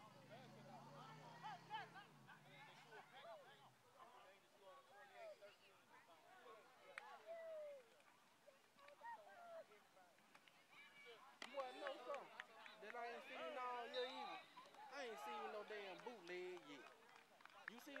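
Faint, indistinct talk of people nearby, unintelligible, growing louder and busier in the second half. A low steady hum sounds under it for the first few seconds, then stops.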